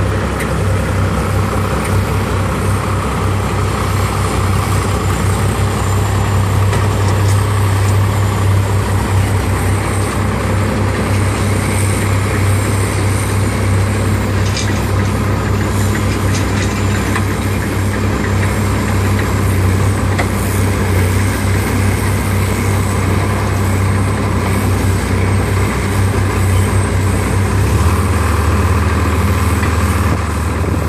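Engine of a Teledyne Princeton D-5000 truck-mounted forklift running steadily as it carries and lowers a pair of one-ton limestone quarry blocks; the engine's low note shifts near the end.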